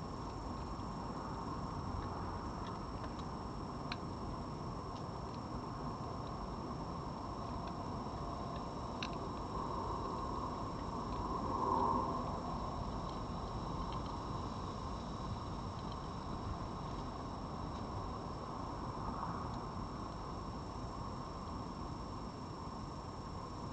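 Steady background hiss with a few faint, scattered clicks of a red fox eating dry food from a plate, and a brief swell of noise about halfway through.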